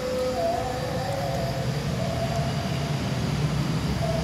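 A motor running steadily: a low rumble with a faint, slightly wavering whine above it.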